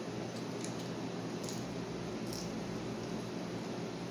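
A child chewing a shrimp with closed mouth: a few faint, soft wet mouth clicks over steady room hiss.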